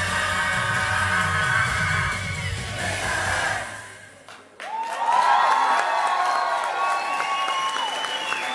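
A live band and singer hold the last note of a pop-rock song, which ends a little past halfway. After a brief lull, the audience breaks into cheering with high-pitched screams.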